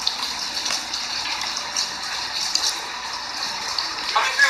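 Steady splashing and running of water in a swimming pool, with small irregular splashes on top.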